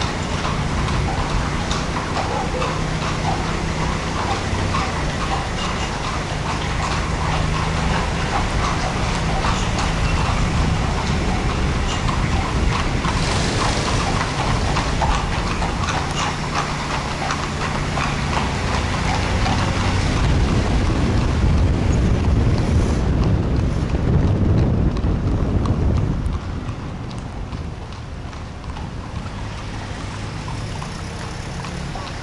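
Horses' hooves clip-clopping on a paved street, many strikes in quick succession, over the low steady running of a vehicle engine. The sound drops away suddenly about 26 seconds in.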